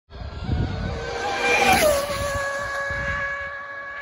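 Electric RC speed-run car's brushless motor whining over road and wind noise, its pitch falling sharply just under two seconds in, then holding steady.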